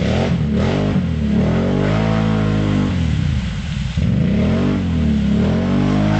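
Quad bike (ATV) engine revved up and down repeatedly, its pitch climbing and falling two or three times, as the machine bogs down in deep mud and water with its wheels churning: it is stuck.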